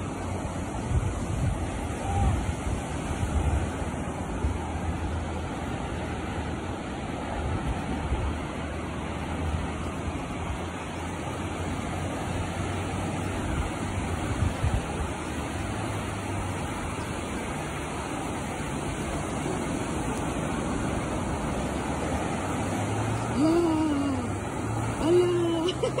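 Ocean surf breaking on a beach, a steady wash of noise, with patchy low rumble underneath. Near the end a voice makes two short calls.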